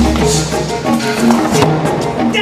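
Background music: an upbeat instrumental track with a repeating melodic pattern, a deep bass note and light percussion.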